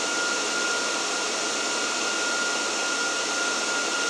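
Dell R740 rack server's cooling fans running steadily and loudly: an even rush of air with a steady high whine on top.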